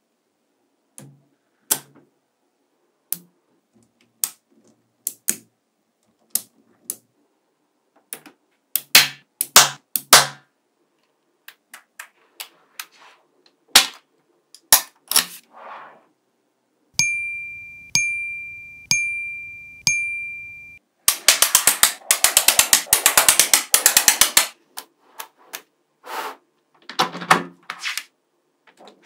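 Small magnetic balls clicking sharply as they snap together, at first in scattered single clicks. Later comes a fast rattling run of clicks lasting a few seconds as many balls snap on at once. In the middle, four ringing dings about a second apart each fade away.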